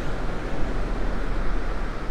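Steady outdoor background noise with a deep low rumble and no distinct events.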